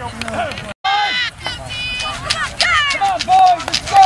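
Sideline spectators and players at a youth football game shouting and calling out over one another, many of the voices high-pitched, with scattered sharp knocks. The sound cuts out for a moment about a second in, and the loudest shout comes near the end.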